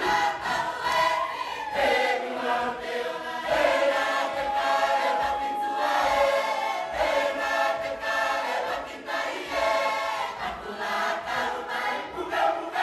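Cook Islands imene tuki choir of women and men singing unaccompanied in massed harmony, in short phrases, with a high note held for about two seconds near the middle.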